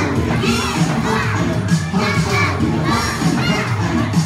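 A group of young children shouting and singing along together over backing music with a steady bass line.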